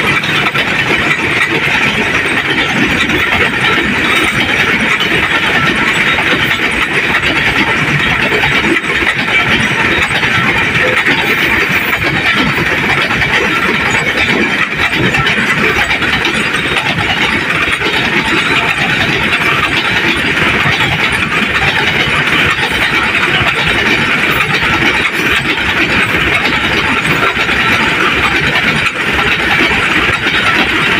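Open freight wagons of a coal train rolling past close by: a loud, steady clatter and rumble of wheels on the rails, with no breaks.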